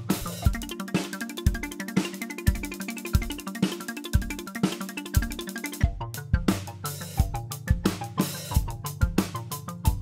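Live acoustic drum kit played along with a pitch-shifted drum loop triggered from a Roland SPD-SX Pro sampling pad, a steady dense groove of kick, snare and cymbal hits. The groove changes about six seconds in.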